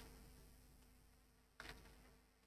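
Near silence: a faint steady electrical hum, with one brief faint tick about one and a half seconds in.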